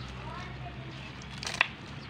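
Kitchen knife cutting through mustard-green stalks onto a wooden cutting board, with one sharp cut about one and a half seconds in, over a faint low hum.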